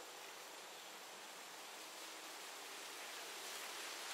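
Faint, steady hiss-like noise with no distinct events, a soft ambient noise bed.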